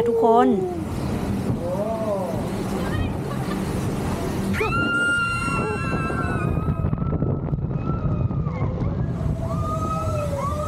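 Log-flume ride boat running through water with a steady rumble and rush. About halfway through, several riders cry out in high, wavering voices for a couple of seconds, and a few more cries come near the end.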